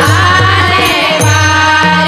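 Devotional folk song: a woman's voice singing an ornamented, gliding line that settles into held notes about a second in, over a steady beat of low drum strokes about twice a second, with sharp percussion strokes on the beat.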